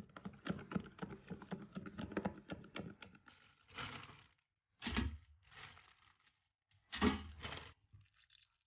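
A metal spoon clinking and tapping quickly against a plastic tub while stirring an oil-and-seasoning mix. This is followed by a few short bursts of parchment paper rustling and scraping on a metal baking tray, two of them with a low knock.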